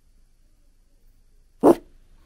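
A single short bark from a toy poodle, about one and a half seconds in, after near silence.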